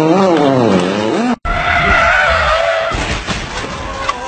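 A rally car engine revving up and down as the car slides, cut off abruptly after about a second and a half. Then tyres skidding, with a wavering squeal over rough scraping noise and a few knocks about three seconds in.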